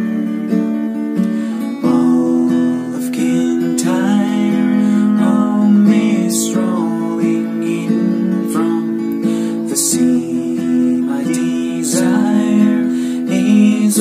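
Acoustic guitar strummed steadily, with a man singing along.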